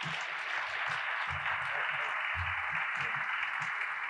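Audience applauding steadily, with faint voices underneath.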